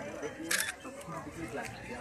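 Indistinct voices of people talking nearby, with a short, sharp clicking noise about half a second in and a fainter click later.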